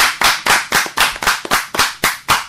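Hand clapping in a steady, even rhythm, about four to five claps a second.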